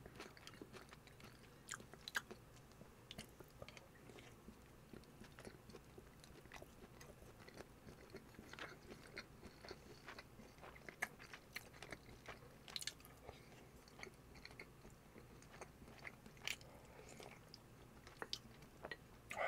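Faint chewing and mouth sounds of a person eating bulgogi over rice, with scattered soft clicks and smacks.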